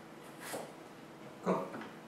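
Nakiri knife cutting a thin slice off a carrot on a plastic cutting board: one short, faint, crisp cut about half a second in. A louder short sound follows about one and a half seconds in.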